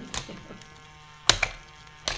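Loopin' Chewie game: its small battery motor whirring steadily as the arm swings the spaceship piece round, with sharp plastic clacks as the flipper levers strike it. The loudest clack comes about a second and a half in.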